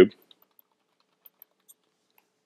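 Computer keyboard being typed on: a handful of faint, separate key clicks.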